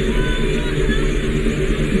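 Tsunami floodwater surging ashore: a loud, steady, low rushing noise, with faint voices calling over it.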